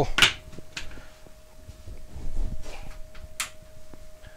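Handling noise at a wood lathe: a sharp knock just after the start, then a few light clicks and soft rustles as the lathe's control box and a bowl gouge are handled, over a faint steady hum.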